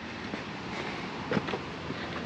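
Steady outdoor background noise, an even hiss with no distinct event, with one brief faint sound about a second and a half in.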